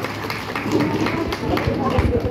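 Audience clapping, with voices talking over the clapping.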